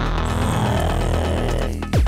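Techno loop playing back from a music sequencer: a steady sustained bass note under a dense synth layer. The layer cuts off near the end and a kick drum hits. The part is not starting on the downbeat.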